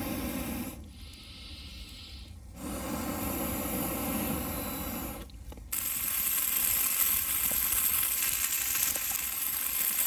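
Wood campfire burning, then, after a cut about six seconds in, a steak sizzling in a frying pan over the fire with a steady bright hiss.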